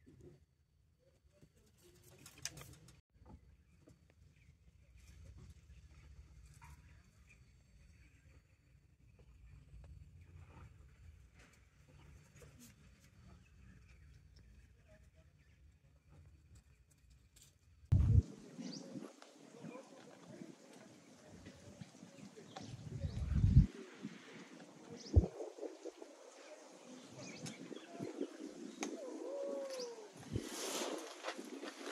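Quiet outdoor ambience. A faint low rumble gives way, about two-thirds of the way through, to louder rumbling with a few sharp thumps, and a bird calls near the end.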